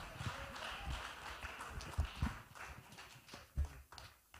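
Footsteps on a stage, a few soft low thumps, picked up faintly by a handheld microphone carried by the walker, over faint fading hall ambience.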